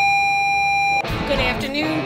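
Electronic school class-change tone from a wall PA speaker: one steady, loud tone that cuts off suddenly about a second in. Music and voices follow.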